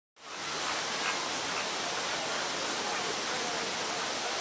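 A steady, even rushing noise like running or falling water, with faint short sounds scattered behind it.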